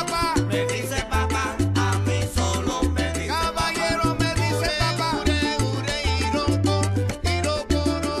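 Salsa music playing: a syncopated bass line under busy percussion and melodic lines.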